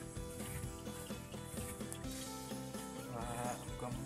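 Background music with steady held notes, and about three seconds in a short wavering bleat from a young cow.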